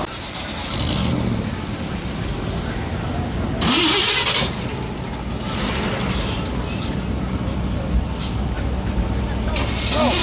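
A car engine idling with a steady low hum, with indistinct voices and a short hiss about four seconds in.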